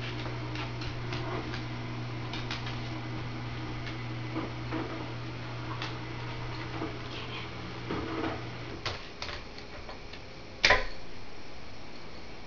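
Scattered light clicks of a dog's and a kitten's claws on a hardwood floor during play, over a steady low hum that stops about nine seconds in. One sharp knock near the end is the loudest sound.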